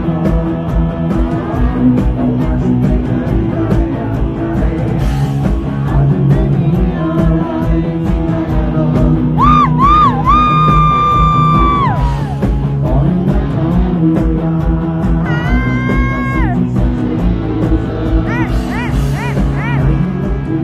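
Live rock band playing, heard loud from the audience: electric guitar, bass and drums with a steady beat under a singer. Long held notes that bend at their start come in around the middle and again near the end.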